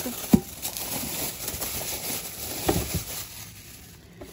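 Thin plastic packaging crinkling and rustling as a cookware pot is pulled out of its bag and bubble wrap. There is one sharp knock about a third of a second in and two softer knocks near the three-second mark.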